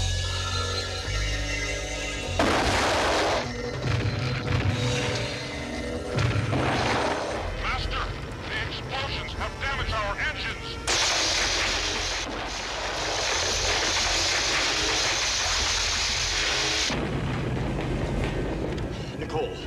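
Science-fiction TV soundtrack: music mixed with booming blast sound effects. There are short rushing bursts about two and a half and six and a half seconds in, then a long steady rushing noise from about eleven seconds that cuts off about a second before the end.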